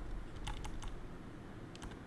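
A few light computer keyboard keystrokes: a small cluster of clicks around the middle and a couple more near the end.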